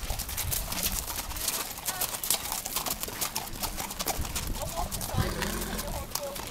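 Several horses walking past on a muddy track, their hooves clopping in an irregular stream of knocks.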